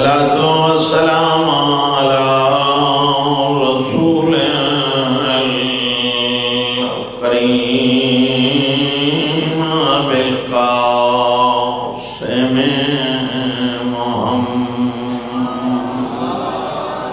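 A man's voice chanting verses into a microphone in long, held melodic lines, with short breaks between phrases.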